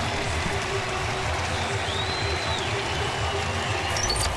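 Stadium crowd noise: the steady din of a large crowd, with some applause.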